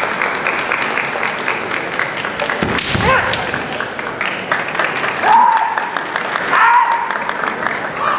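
Kendo fencers' kiai: two long, high-pitched yells a little past the middle and again near the end, over a clatter of bamboo shinai knocks and feet on the wooden floor, with one loud strike-and-stamp impact about three seconds in.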